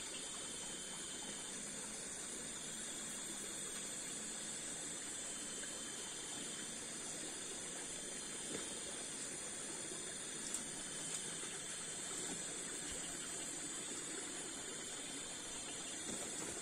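Night insects chirring steadily in forest undergrowth, a constant high buzz with a few faint clicks.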